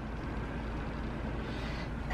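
Steady background noise with a low rumble and a faint steady hum, without distinct events.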